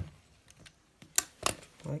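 Needle-nose pliers working the metal back of a binder ring mechanism as it is bent up: a soft knock at the start, then two sharp metallic clicks a little after halfway, about a third of a second apart.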